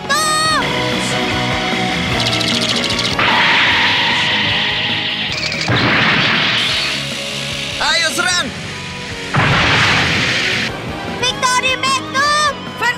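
Cartoon soundtrack: background music with a high-pitched shout at the start and another near the middle. Under it come three loud whooshing crash effects as the toy race cars collide and fly off the track.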